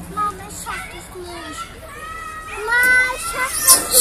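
A young child's high-pitched wordless calls and babble, rising and falling in pitch, loudest about three seconds in.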